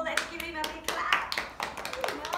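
A few people clapping their hands in short, uneven claps, with voices over them.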